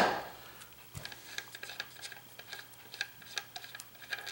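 A hammer tap on a brass guitar stud well dying away at the start, a soft knock about a second in, then a string of faint, irregular small clicks from the metal hardware being handled.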